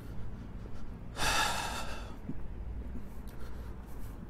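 A man's loud breath close to the microphone, a single hissy exhale or sniff lasting under a second, about a second in, over a steady low rumble.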